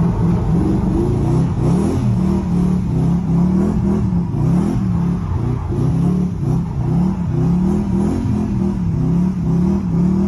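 BMW S62 V8 in a drift-prepared Nissan 350Z revving hard while drifting, its note rising and falling about once a second as the throttle is worked.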